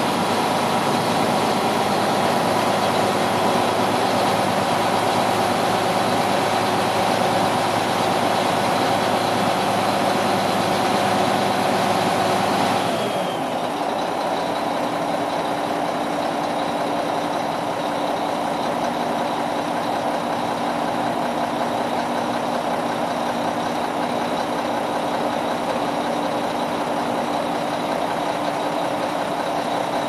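Mack EM7 inline-six diesel of a dump truck running steadily while the dump body is lowered on its PTO-driven hydraulic hoist. A little under halfway through, the sound drops abruptly and changes pitch, settling into a quieter, steady idle.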